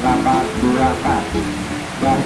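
A man's voice talking over a steady background hiss.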